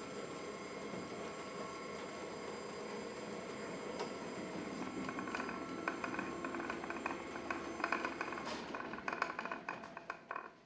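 A belt-driven electric drive mechanism running: a steady whir with several thin high whining tones. About halfway through, a fast rattling clatter joins in.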